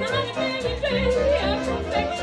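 Live hot jazz band playing: a woman singing over clarinet and saxophone, with double bass and drums keeping a steady beat.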